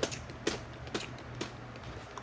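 Fingers tapping, a handful of sharp clicks about two a second in a rough beat.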